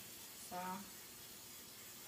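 Misto pump-pressurised oil sprayer misting olive oil onto a waffle iron: a steady spray hiss that starts abruptly.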